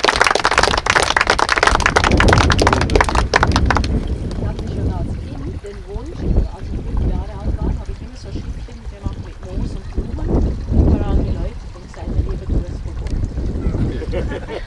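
A small group clapping, a dense patter of applause that stops about four seconds in. After it, wind rumbles on the microphone under low voices.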